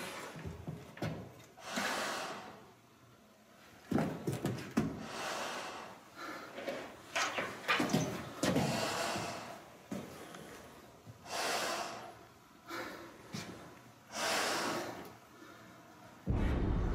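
A man breathing hard through a half-face respirator mask: long, noisy breaths about every two seconds.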